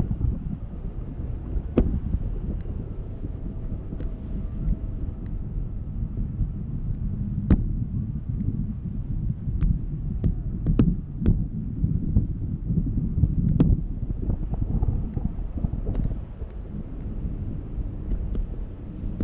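Wind buffeting the microphone of a camera carried aloft on a parasail, a gusty low rumble, with a scattering of sharp clicks.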